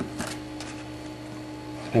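A thin card shim being slid out from under a magnetic encoder readhead, giving a short papery click at the start and a fainter one just after. A low steady hum runs underneath.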